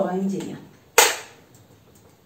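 A single sharp knock about a second in, with a brief ring-out, as a hard plastic ruler is set against a whiteboard.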